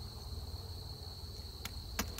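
Steady high-pitched trilling of insects, typical of crickets in late-summer grass, over a low rumble. A short click comes near the end as the metal hive tool meets the wooden hive box.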